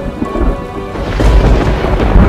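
Thunderstorm sound effect: a deep rumble of thunder over rain, swelling louder about a second in, with music underneath.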